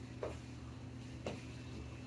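A person's sneakers landing on the floor during jump lunges, two landings about a second apart, over a steady low hum.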